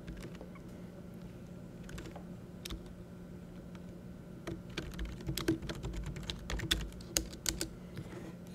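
Typing on a computer keyboard: scattered keystrokes, a few at first and then a faster run in the second half, over a faint steady hum.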